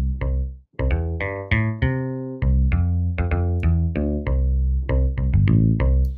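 Sampled electric bass from the Spitfire Audio LABS bass instrument, played from a keyboard: a run of low notes, some short and some held, each with a pick-like attack.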